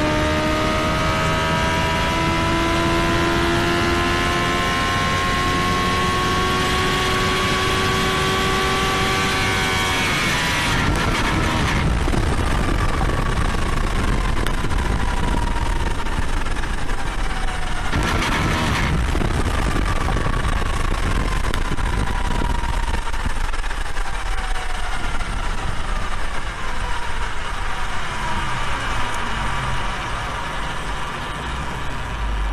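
Sport motorcycle engine running at high revs in top gear, its note climbing slowly as speed builds, with heavy wind rush. About ten seconds in the throttle closes and the engine note falls away slowly while the wind noise carries on.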